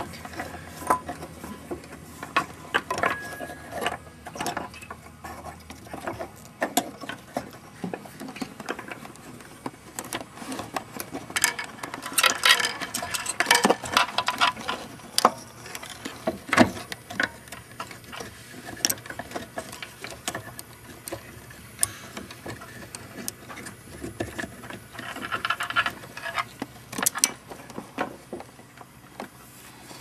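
Scattered small clicks, taps and light rattles of a Wurlitzer 200 electric piano's action as a hammer is worked back into its hammer butt, with busier clusters of clicks around the middle and again near the end.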